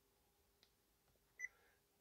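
Near silence in a car cabin, broken by one short high beep from the Honda CR-V's touchscreen radio acknowledging a touch, about a second and a half in, with a faint tick a little after half a second.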